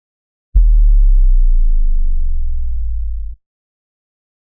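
Intro sound effect under the title card: a single deep, low struck tone with a sharp attack. It rings on steadily and cuts off suddenly after about three seconds.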